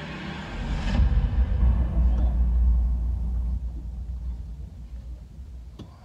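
Deep bass rumble from a film soundtrack played over cinema speakers. It swells up about half a second in, holds strong for a couple of seconds, then slowly fades away.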